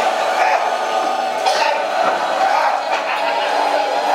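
Voices and crowd noise over a steady sustained background music track during a stage performance.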